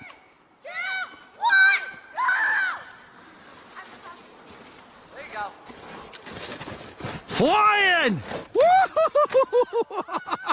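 Excited shouts and calls from people watching a sledder. About seven seconds in comes one long rising-and-falling yell, then quick bursts of laughter, about five a second, as the sledder wipes out at the bottom of the hill.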